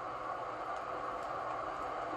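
Steady low hiss with no distinct events: the background noise floor of the recording between spoken phrases.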